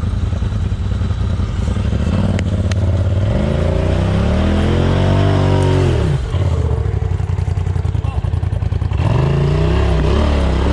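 Arctic Cat Wildcat side-by-side's engine working up a rocky hill climb: running low and steady, revving up about three seconds in, dropping off sharply near six seconds, then revving up again near the end.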